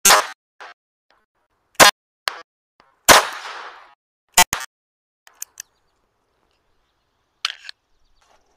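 Walther P22 .22 LR semi-automatic pistol firing: four sharp shots at uneven spacing of about one and a half seconds, the third trailing off in a longer fade, then a few fainter cracks.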